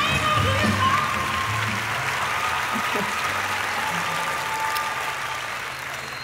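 An audience applauding over walk-on music, the music's bass fading after about two seconds and the applause easing slightly toward the end.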